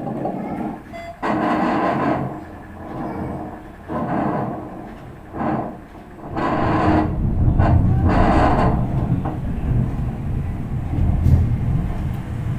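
Handheld fetal doppler on a late-pregnancy belly: bursts of whooshing static as the probe is moved about, then a steadier, deeper whooshing from about six seconds in.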